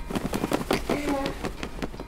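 A baseball cap waved quickly back and forth to fan someone, making a rapid series of flapping whooshes, with a short voice-like hum about a second in.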